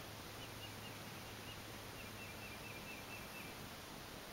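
Faint outdoor ambience with a distant bird calling in runs of short, high, evenly spaced notes, over a steady faint low hum.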